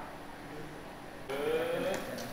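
Quiet background for about a second, then a person's voice near the end, its pitch rising.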